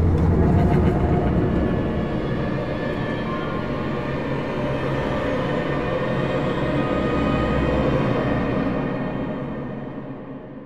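Eerie horror-film score: a dense, sustained drone with a low rumble beneath, fading out near the end.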